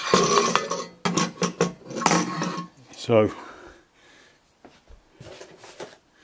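Brass immersion heater being handled: a quick run of sharp metallic clinks and knocks in the first couple of seconds, then a few fainter clicks near the end.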